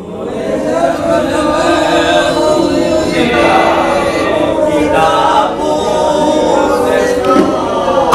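Several voices singing a Hindi ghazal line together without accompaniment, their pitches overlapping loosely rather than in unison. They are not keeping to the leader's rhythm and tone.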